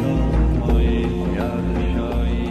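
Background music with a chanted vocal line over a steady low bass.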